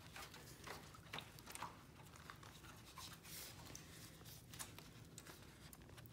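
Near silence, with faint rustles and a few soft ticks as gloved hands press a sheet of parchment paper down into a foil pan of liquid walnut stain.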